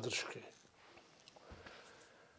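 A man's spoken question ending in the first half second, then a near-silent pause of studio room tone with a faint soft noise about a second and a half in.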